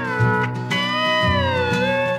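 Instrumental break of a bluegrass gospel song: a steel guitar plays a melody that slides down in pitch, over a bass and guitar accompaniment.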